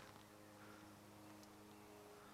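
Near silence with a faint steady hum.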